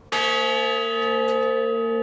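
A 1,000-pound bronze memorial bell struck once just after the start, then ringing on with a long, even sustain of several tones sounding together.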